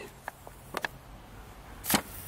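A few faint ticks, then a short, loud thump-and-rustle just before the end as a small hand-launched glider, a plastic-bottle body with foam-board wings, noses into long grass at the end of a short glide.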